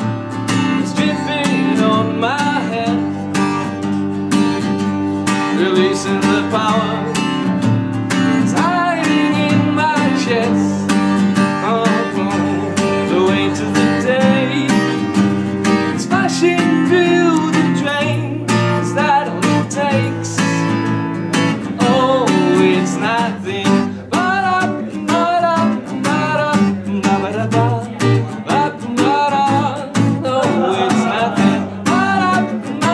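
Acoustic guitar strummed steadily in a live solo performance, with a man singing over it.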